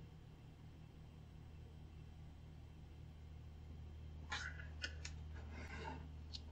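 Quiet room tone with a steady low hum. A few faint short clicks and soft rustles come in the last two seconds.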